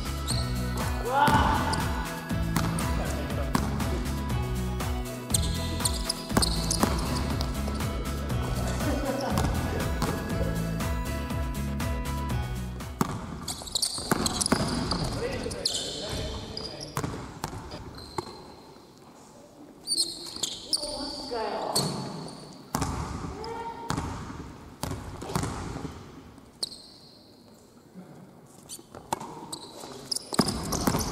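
Basketball bouncing and being dribbled on a hardwood gym floor, with sneakers squeaking during the moves, in a large echoing hall. Background music plays under it for the first half and stops about thirteen seconds in.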